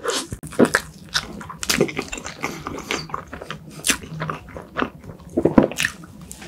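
Close-miked biting and chewing of a soft chocolate crepe cake layered with cream: irregular mouth clicks and smacks, with loud bites about half a second in and again near the end.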